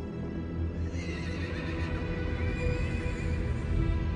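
A horse whinnying, a long wavering cry from about a second in, over film score music with a low rumble underneath.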